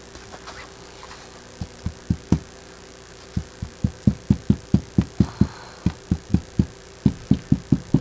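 Rapid, evenly spaced low taps, about four a second, as the tip of a bottle of white glue is dabbed along fabric on a tabletop, laying down dots of glue.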